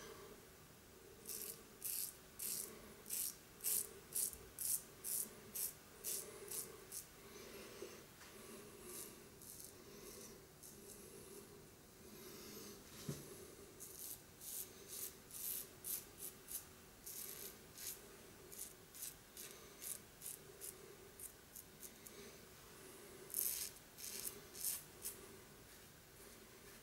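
Double-edge safety razor (Razorock SLAB) scraping through stubble and leftover lather on the cheek and neck in short touch-up strokes, about two a second, in several runs with pauses between.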